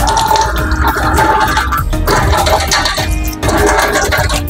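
Tap water running and splashing into a stainless steel sink as the drain is rinsed, over background music with a steady beat.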